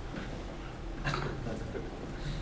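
Steady room hum with one short vocal sound from a person about a second in.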